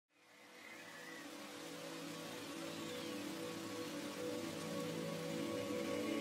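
Soft ambient background music fading in, with held sustained tones over a steady rain-like hiss.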